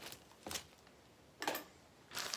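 Two brief handling noises about a second apart, a short knock and then a short rustle, as things are moved on a tabletop in a quiet room.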